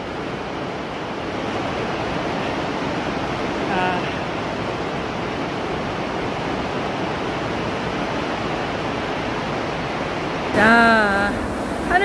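Heavy rain on a greenhouse roof, a steady rushing noise, with a short voice sound about four seconds in and again near the end.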